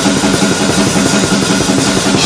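A drum kit played fast, death metal style: a rapid, even stream of drum strokes with a wash of cymbals over it.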